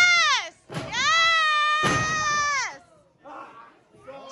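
A person's high-pitched yell: a short falling cry at the start, then one long held cry of about two seconds, with a sharp thud about two seconds in.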